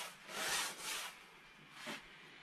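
Wide house-painting brush scrubbing oil paint onto a stretched canvas: two short scratchy strokes in the first second, then a fainter one just before the end.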